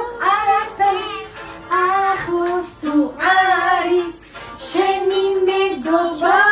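Women singing a simple song in high voices, holding each note for about half a second to a second with short breaks between them.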